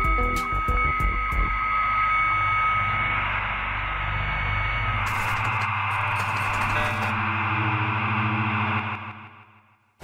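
Electronic title music: a few sharp hits at first, then low drones under a swelling hiss of static-like noise with a burst of crackle midway. It fades out in the last second.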